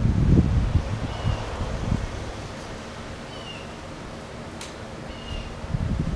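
A few short, high bird chirps spaced a second or two apart, one of them falling in pitch, over a quiet outdoor background. A low rumble fills the first two seconds, and a single sharp click comes about three-quarters of the way through.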